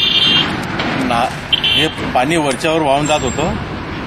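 A man talking in a conversational interview, with two brief high-pitched tones in the first two seconds.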